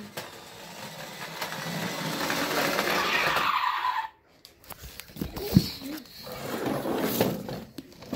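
Battery-powered toy police car running: a whirring noise that builds over about four seconds, with a falling whine near its end, then cuts off suddenly, followed by scattered light clicks and knocks.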